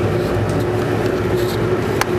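Cordless drill running at a steady speed, pressed against an insulation board.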